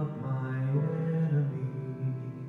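Live grand piano and cellos playing a slow piece in a Middle Eastern style, with a sustained low melodic line under the piano.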